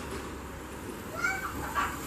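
A cat meowing twice in short calls, about a second in and again near the end, over a steady low hum.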